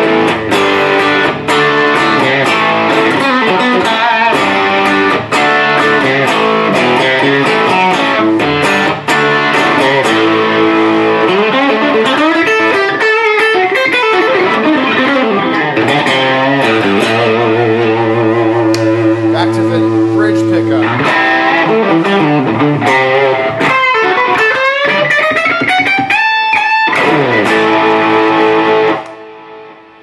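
PRS Vela semi-hollow electric guitar played through an amp with its bridge pickup coil-split and a Boss Super Overdrive pedal on: a run of notes and chords, with one chord left ringing for several seconds midway and bent notes near the end, before the playing dies away.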